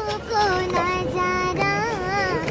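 A young girl singing a song alone, in long drawn-out held notes with slight bends in pitch.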